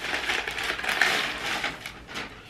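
Crinkling and rustling of a shopping bag and plastic-wrapped packaging being handled as items are pulled out, a busy irregular crackle that peaks about a second in.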